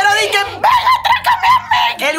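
A woman's voice making a high-pitched sound without words: a rising cry, then a quick run of about six short repeated pulses, about five a second.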